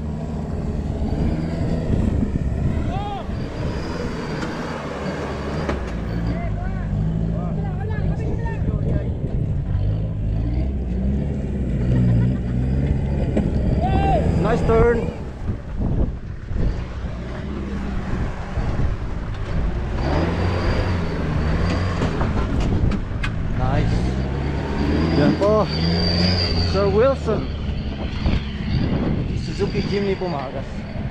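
A small Suzuki Jimny 4x4's engine revving up and down repeatedly as it climbs and crawls over dirt mounds, with people's voices in the background.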